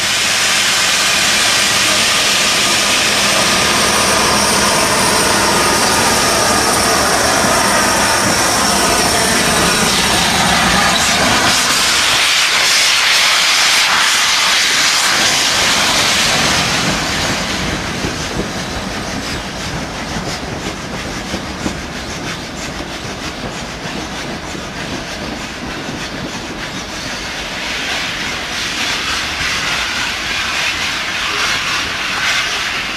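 Merchant Navy class steam locomotive 35028 Clan Line venting steam with a loud, steady hiss for about the first seventeen seconds. The hiss then drops away to a quieter rumble of the train moving off, with a few clicks.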